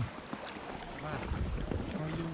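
Wind buffeting the microphone with a low rumble that grows stronger partway through, over water sounds from an inflatable canoe being paddled.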